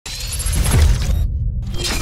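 Intro logo sting: a loud sound-design effect with a deep bass rumble and a bright, crackling noisy top. The top drops out briefly just past the middle, then surges again near the end.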